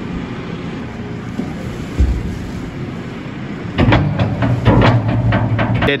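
Diesel engine of a JCB telehandler running steadily while its bucket tips a load of straw-bedded cattle dung into a steel-sided trailer. A low thud about two seconds in, then from about four seconds in a run of knocks and rattles as the muck drops in, with the engine louder.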